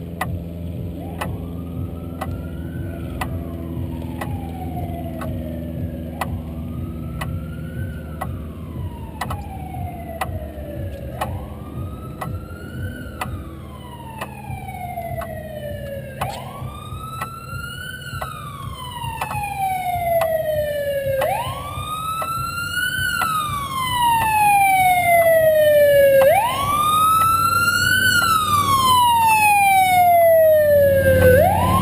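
A police siren wailing in slow rises and falls, about one cycle every five seconds, growing louder as it approaches, over a steady low rumble.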